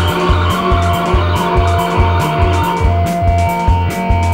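A rock band playing a krautrock/space-rock instrumental: a repeating, pulsing low bass line and steady drum beat under sustained keyboard and synth tones. A noisy synth swell rises over the band and fades away about three seconds in.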